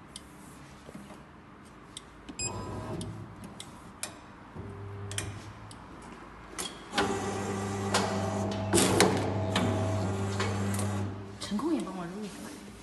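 Electric paper cutter's motor running with a steady hum for about four seconds as the clamp and blade come down, with a sharp crunch near the middle as the blade cuts through the paper stack. Shorter bursts of the same hum come earlier.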